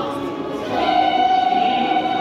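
Choir singing, with one long note held from just under a second in.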